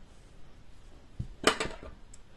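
Metal scissors picked up off a tabletop: a soft knock about a second in, then a short clatter of sharp clicks.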